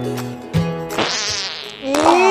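Background music notes, then, about a second in, a high, dense buzzing like an insect's, which ends in gliding pitches.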